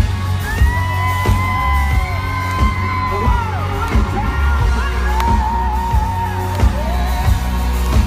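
Live country-pop band recorded from within the audience: loud bass and drums with electric guitar, and voices holding long high notes over it. Fans whoop along.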